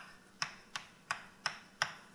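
Chalk tapping and striking on a blackboard while writing: a run of short, sharp clicks, about three a second and slightly uneven, the loudest near the end.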